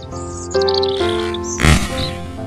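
Soft piano music with birds chirping, then about 1.7 s in a single loud, sharp bang as the bamboo slingshot's shot strikes the target and it bursts in a white puff.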